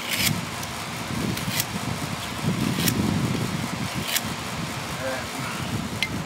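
A concrete capstone being handled on the block retaining wall, with about four sharp clicks of stone knocking against stone, over a low, uneven rumble.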